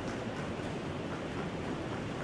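Chalk tapping lightly on a blackboard as small plus signs are marked, over a steady background rumble.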